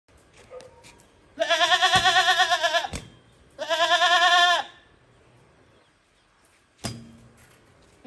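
Young female Hyderabadi goat bleating: two long, quavering bleats, the first about a second and a half and the second about a second. A short knock follows near the end.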